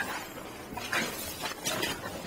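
Footsteps through dry marsh vegetation: three short rustling crunches, near the start, about a second in and near the end.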